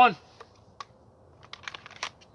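A few faint clicks and small rattles of a handgun being handled and pushed back into its holster, with a quick cluster of clicks about a second and a half in.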